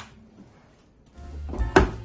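A Saivod dishwasher's door being swung shut and closing with a single sharp knock near the end.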